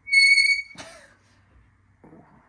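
A short, loud, high-pitched squeak of metal on metal, held at one steady pitch for just over half a second, as a part is worked out of an LS1 V8 engine block with a long bar tool. A single knock follows as it comes free.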